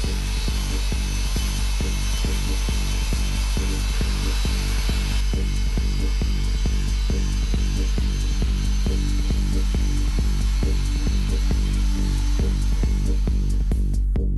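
Walter Big Buff III grinder running at 6,000 rpm with an Enduro-Flex 2-in-1 disc, grinding down a weld on stainless-steel tube. The grinding hiss is strongest in the first five seconds and fades near the end. It plays under electronic background music with a steady beat.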